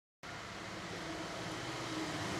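Dead silence that breaks off sharply about a fifth of a second in, giving way to a steady background hiss with a low hum underneath that slowly grows louder.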